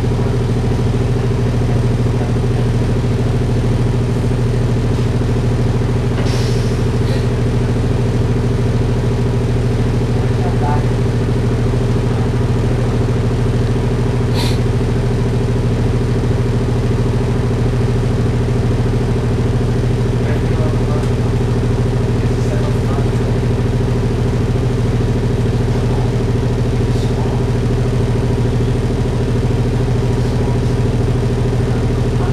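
Loud, steady drone of a 2007 Orion VII diesel-electric hybrid bus heard from inside the cabin, from its Cummins ISB diesel engine and BAE HybriDrive system. It holds one unchanging low pitch with a few brief clicks and rattles.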